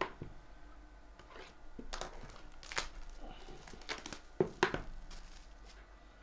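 Plastic shrink-wrap being slit and torn off a sealed trading-card box: crinkling with a few sharp rips, the loudest two close together about three-quarters of the way in.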